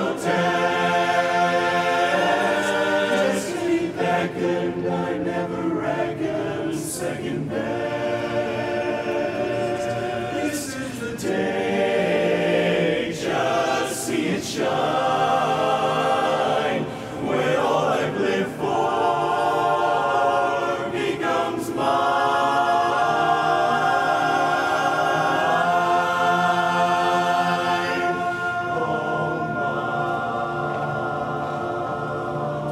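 Male barbershop chorus singing a cappella in close harmony, holding long ringing chords with brief breaks between phrases.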